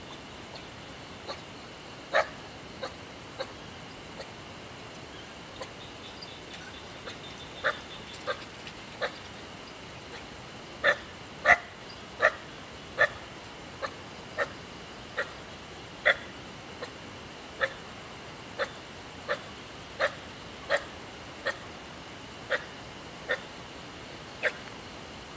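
An animal calling over and over in short, sharp calls, scattered at first, then settling from about halfway into an even beat of roughly one call every second or less.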